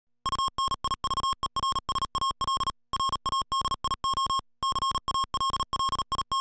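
Morse code sent as a single steady beep tone, keyed on and off in quick dots and dashes, with two short pauses between groups about three seconds and four and a half seconds in.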